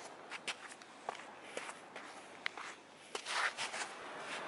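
Footsteps on a sandy beach: a string of irregular crunches and clicks, the loudest scuffing cluster near the end.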